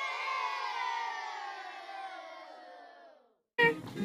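A studio-audience sound effect: many voices in one drawn-out call that slides slowly down in pitch and fades out after about three seconds.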